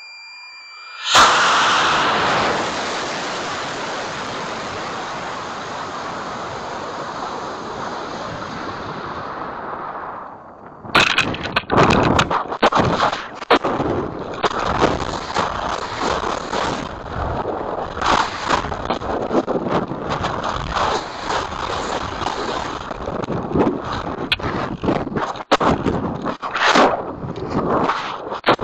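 High-power dual-deploy rocket heard from its onboard camera: a steady high tone for the first second, then the motor ignites suddenly about a second in and its roar fades away over about nine seconds as the rocket climbs. About eleven seconds in a sharp pop, the ejection charge at apogee, is followed by irregular gusty wind buffeting as the rocket falls on its shock cord with the main parachute never deployed.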